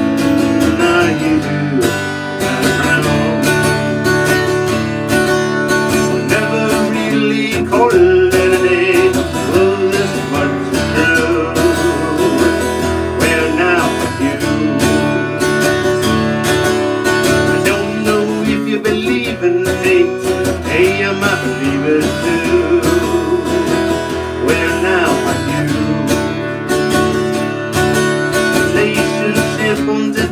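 Strummed acoustic guitar with a harmonica carrying the melody, an instrumental break with no singing.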